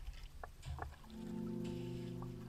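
Kayak paddle strokes in the water with a couple of light knocks, under background music whose sustained chords come in about a second in.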